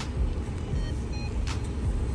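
Vehicle engine idling, a steady low rumble heard from inside the cabin, with a faint click about one and a half seconds in.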